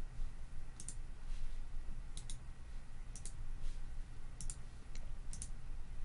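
Computer mouse clicking about five times, a second or so apart, each click a quick double tick of button press and release, over a low steady hum.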